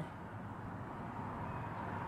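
Steady low background hum of distant road traffic, with a faint steady tone running under it.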